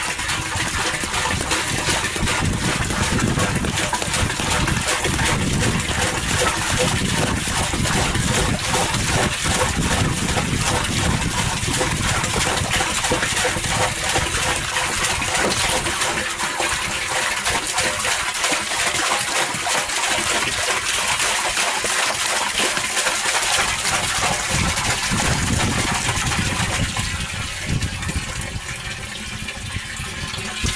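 Water pouring steadily from a plastic jerrycan's spout into a plastic barrel of water, with a quick regular pulsing through the stream; it thins a little near the end.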